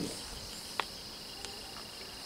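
Steady high-pitched insect chirring in the background, with one short faint click a little before halfway.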